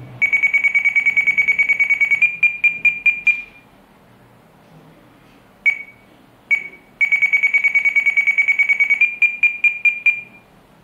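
RadioLink RC8X radio transmitter's touchscreen key beeps, one high steady pitch, as the minus button is held to count the travel value down: a fast run of beeps for about two seconds, then a few slower single beeps. Two single beeps come a little after five seconds in, then another fast two-second run and more slow beeps near the end.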